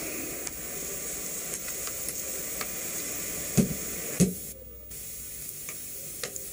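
Steady hiss of background noise with two dull knocks about half a second apart in the middle: wooden crutches tapping on the floor. The hiss drops out briefly just after the knocks.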